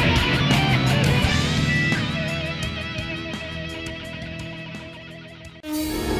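Electric-guitar music of a segment opener, fading away over the last few seconds, then cut off abruptly near the end by a different sound.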